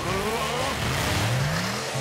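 Cartoon race-kart engine sound effect revving up: a short rising whine at the start, then a longer, lower rising rev through the middle.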